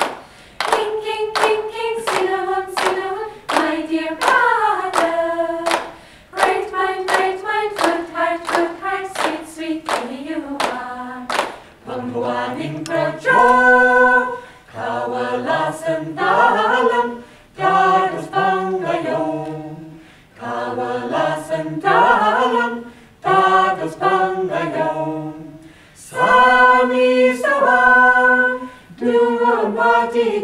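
A group of voices singing unaccompanied, with rhythmic hand-clapping about twice a second for the first twelve seconds. After that the clapping stops and the singing goes on, with a lower voice part added.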